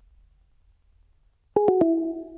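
About a second and a half of near silence on the call line, then a phone-line electronic tone: three quick notes stepping down in pitch, each starting with a click, the last one held. It is a call-ended style tone from a caller whose line has gone silent.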